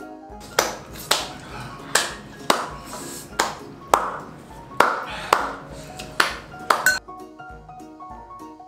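About a dozen sharp hand claps in loose pairs, roughly half a second apart, stopping near the end. They sit over steady background piano music.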